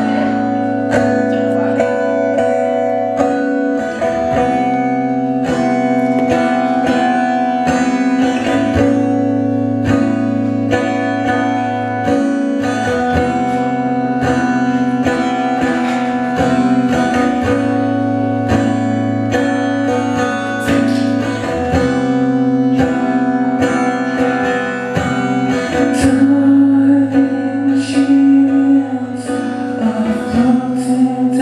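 Live acoustic guitar, steadily strummed chords of a song intro, and a man's singing voice comes in near the end.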